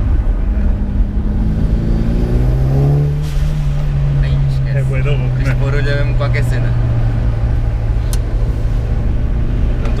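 Mitsubishi Lancer Evolution VIII's turbocharged 2.0-litre four-cylinder engine, heard from inside the cabin. It pulls up through the revs for about three seconds, dips briefly, then holds a steady drone, and rises again near the end.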